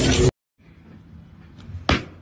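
A handheld percussion massage gun hammers on an ice-coated car body panel, a dense rattling buzz that cuts off suddenly a fraction of a second in. Near the end, a single saw stroke bites into a plastic-wrapped roll of mineral wool insulation.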